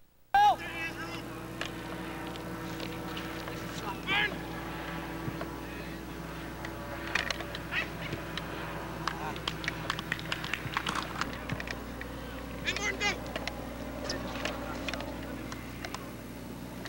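Scattered distant shouts from players and spectators at a soccer game, with a few sharp knocks, over a steady low hum; the clearest calls come about four seconds in and again near the end.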